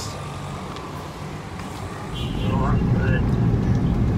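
Quiet street background hum, then about halfway through a louder steady low rumble of a car's engine and road noise heard from inside the moving car's cabin.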